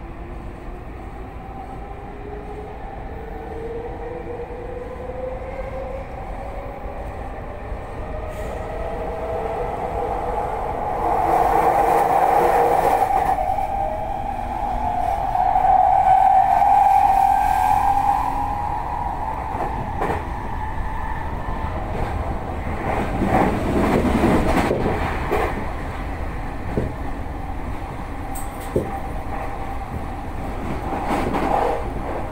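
Toei Mita Line 6500-series electric train heard from its rear cab while accelerating. The traction motors' whine rises steadily in pitch over the first dozen seconds, then runs loud and steady at speed, with wheel-on-rail running noise underneath.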